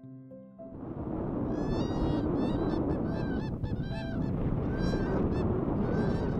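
A pair of whooping cranes giving their unison call: a long run of loud, bugling whoops from the two birds together, starting about a second and a half in, with a steady rushing noise underneath.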